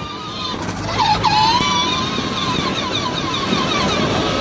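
Child's Polaris ride-on quad driving on asphalt, its motor and gears giving a steady high whine that wavers slightly, with a brief dip in pitch about a second in, over the rumble of its tyres.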